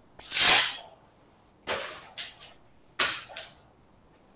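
Gloves being taken off, their hook-and-loop wrist straps ripped open: three short rasping rips, the first the loudest, with a couple of smaller tugs after the second.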